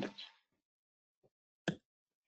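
A pause in speech that is near silent apart from one short, sharp click near the end.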